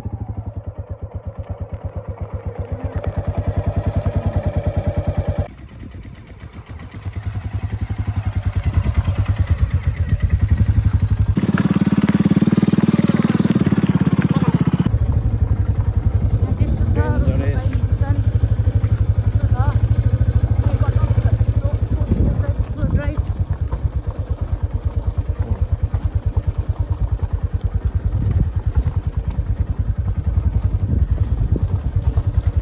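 Motorcycle engine running under way, its exhaust pulses close and steady, rising and easing as the bike is ridden over a rough dirt track.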